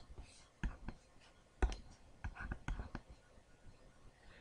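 A few faint clicks and taps, such as a stylus tapping a tablet screen, with soft whispering.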